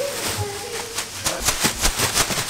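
Clothes being tipped out of a laundry bag into a top-loading washer drum: a run of quick rustles and crinkles from the bag and fabric, picking up about a second in. A brief bit of voice comes first.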